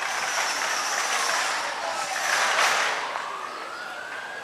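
Outdoor warning siren wailing, its pitch slowly falling and rising again, sounding the alarm for a tsunami drill. A brief louder rush of noise comes a little past the middle.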